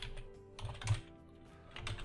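Computer keyboard being typed on: a few quick keystrokes, with a pause between them.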